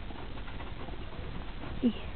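Low background hiss with one short, low, falling coo from a racing pigeon near the end.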